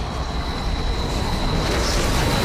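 Storm wind sound effect: a dense rushing roar with a heavy low rumble, building steadily, with a thin high whine held over it.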